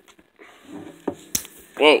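A cell phone that is doing the recording is dropped and hits a hard surface: two sharp knocks about a quarter-second apart, a little past a second in.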